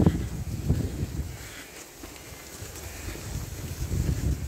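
Wind buffeting the microphone: an uneven low rumble that eases off about two seconds in, then builds again.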